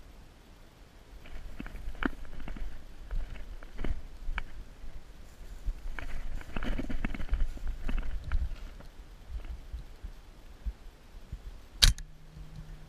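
Footsteps and gear rustling as a player moves through dry grass and gets down into cover, with low rumble on the head-mounted camera's microphone. A single sharp click comes near the end.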